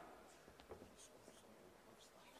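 Near silence: room tone with a few faint, scattered clicks and rustles.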